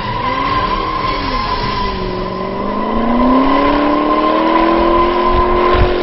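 2010 Shelby GT500's supercharged V8 pulling hard through a drift, its tyres squealing in one steady high note. The engine note dips, then rises about two seconds in and holds high.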